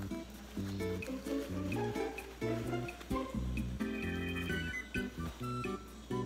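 Background music: a bouncy tune of short pitched notes changing several times a second.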